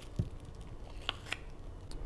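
Quiet handling of cucumber halves and crumpled plastic wrap on a tabletop: a soft thump near the start, then a few light clicks about a second in.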